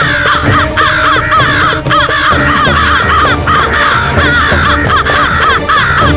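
A flock of crows cawing, many harsh calls overlapping in a dense chorus, over dramatic background music.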